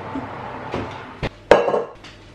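Metal bakeware clattering as a cake tin goes into an oven: a light knock about a second and a quarter in, then a louder metallic clank that rings briefly.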